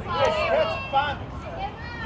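Several people's voices talking and calling out, overlapping one another.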